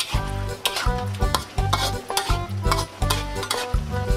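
Metal spatula scraping and tossing in a steel wok as luffa and ground chicken stir-fry with a sizzle, over background music.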